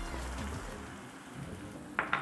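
Salt sprinkled by hand into a pot of boiling water: a quiet, steady granular patter.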